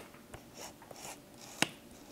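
Handling clicks from a Sony A7S camera and its adapted Canon lens as its switches and dials are worked: a sharp click at the start and another about a second and a half in, with faint rubbing between.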